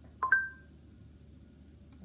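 A short electronic beep, two tones at once, about a quarter second in, then a faint steady low hum.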